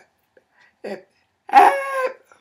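A woman's voice: a short vocal sound about a second in, then a loud, drawn-out exclamation with her mouth wide open near the end.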